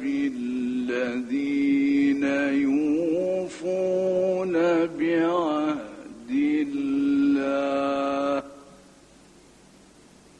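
A man reciting the Quran in the melodic, ornamented tajweed style through a microphone, with long held notes and wavering melismas. The voice stops about eight and a half seconds in, leaving only faint recording hiss.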